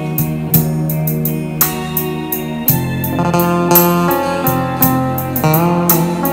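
Music with a steady beat played loud through a pair of JBL Control 25 loudspeakers, driven by a four-channel power amplifier rated 850 W per channel, far more than the speakers are rated for.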